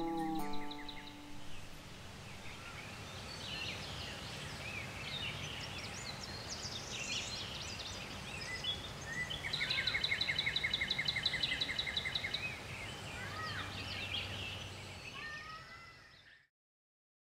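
The last notes of a resophonic guitar ring out and fade away in the first second. Birds then sing over a faint outdoor hush: scattered chirps, and near the middle about three seconds of a rapid, even trill of repeated notes.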